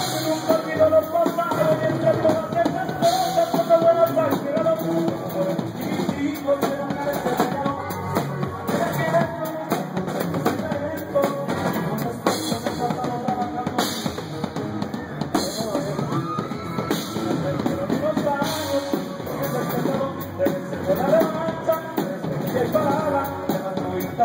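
Live regional Mexican corrido band playing, with sousaphone (tuba) and drum kit, and a steady beat throughout.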